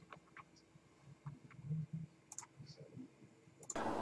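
Faint, scattered clicks of a computer mouse, about half a dozen, over quiet room tone.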